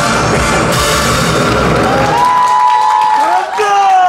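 Loud drumming on a set of Korean barrel drums (buk) over a backing track, which stops about two seconds in; a held note rings on briefly, then a man's wavering voice comes in near the end.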